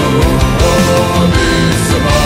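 Loud rock music, with no singing in this stretch.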